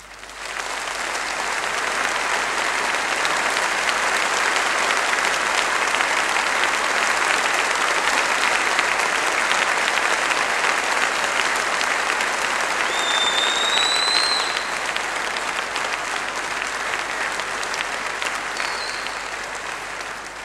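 Audience applauding. The applause starts abruptly, holds steady and eases off a little in the second half. A short rising whistle from the crowd comes about thirteen seconds in.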